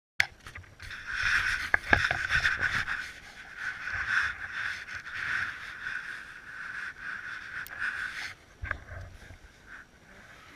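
Close rustling and rubbing noise on the camera, with a few sharp knocks at the start and around two seconds in. The rustling stops abruptly just after eight seconds.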